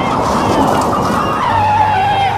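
Car tyres screeching in a hard skid: a loud, wavering high squeal that settles into one steady pitch in the second half.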